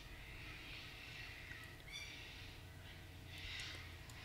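Faint breathing close to the microphone over a low steady hum, with a breath swelling slightly near the end.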